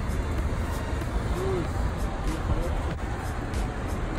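Steady low road and engine rumble of a moving car heard from inside the cabin, with faint voices in the middle.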